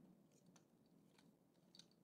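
Near silence, with a few faint clicks of plastic Lego parts being handled and fitted together.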